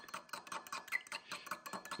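Fork whisking beaten eggs in a small bowl, the tines ticking quickly and steadily against the bowl's sides.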